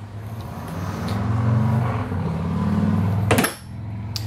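A low mechanical rumble with a steady hum in it, swelling about a second in and cut off by a sharp click shortly before the end.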